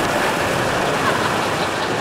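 Masses of plastic ball-pit balls rustling and clattering, a loud, steady jumble as people thrash around buried in the pit.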